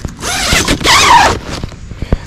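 Tent door zipper being pulled open in two quick strokes.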